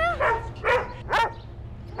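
Dalmatian barking: a run of short, loud barks about half a second apart.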